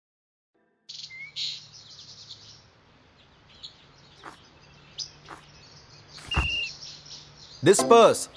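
Birds chirping and calling in an outdoor ambience, starting about a second in after a brief silence, over a faint steady low hum, with a few sharp clicks.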